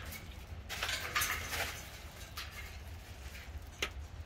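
A few short scratchy rustles about a second in and one sharp click near the end, as an African grey parrot shifts about on a driftwood perch.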